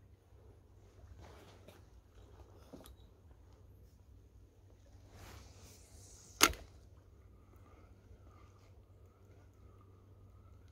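A single sharp click from a spinning reel being handled about six and a half seconds in, the loudest sound, over faint low background noise; afterwards a faint wavering whine comes and goes.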